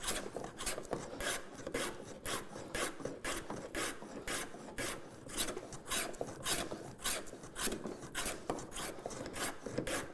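Metal plough plane cutting a groove along the edge of a wooden rail, in quick short strokes of about three a second, each a brief scraping swish as the iron lifts a shaving. It is cutting with the grain, leaving crisp groove edges.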